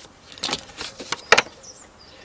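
Metal socket and extension clinking as they are fitted onto the oil filter housing cap: a handful of irregular sharp clicks in the first second and a half, the loudest near the end of them.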